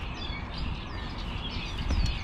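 Birds chirping: several short, quickly falling chirps repeating, over a steady low rumble.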